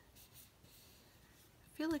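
Faint rubbing and rustling of fingers on a paper planner page as a sticker is pressed down.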